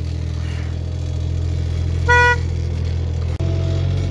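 Small site dumper's engine running steadily, with one short horn toot about two seconds in and a click shortly before the end.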